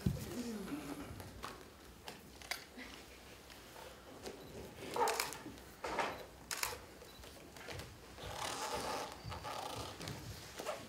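Dancers' bodies and bare feet moving on a stage floor: scattered knocks and shuffles, with breathing and a short falling vocal sound at the start.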